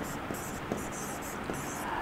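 Stylus writing on an interactive smart-board touchscreen: a quick run of short, separate scratchy strokes as a word is handwritten.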